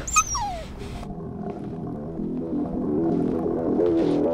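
A brief high whine that falls steeply in pitch, then slow, moody music with held low notes begins about a second in and builds.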